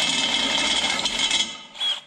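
Cordless drill boring into a wooden pole, the motor whining steadily as the bit cuts. It stops about a second and a half in, with a short burst from the drill again just before the end.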